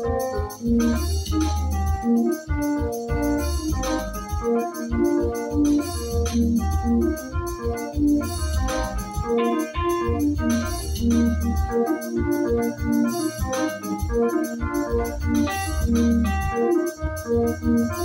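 Yamaha arranger keyboard played with both hands in lingala style: a busy run of quick melody notes over a steady bass line and drum beat.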